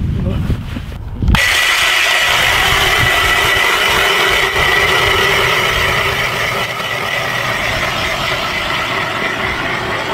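Low wind rumble on the microphone, then about a second in a battery-powered ice auger starts suddenly and runs steadily with a high motor whine, its bit boring through lake ice.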